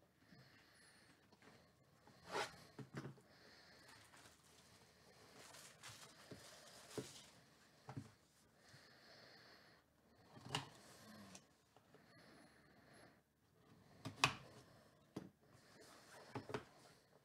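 Plastic shrink wrap being torn off a cardboard trading-card hobby box and the box being opened by hand: faint crinkling and rustling, broken by several sharp crackles.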